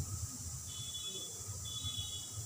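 Two faint, high-pitched steady beeps, the first lasting about half a second and the second a little shorter, over a low steady hum.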